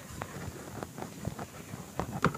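Scattered light rustles and clicks of a piece of carpet material being handled and cut with a blade.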